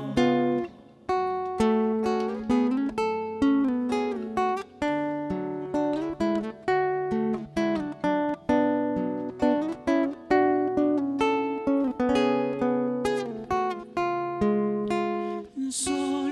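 Solo nylon-string classical guitar, fingerpicked: a steady line of single plucked notes and chords, each ringing out and fading.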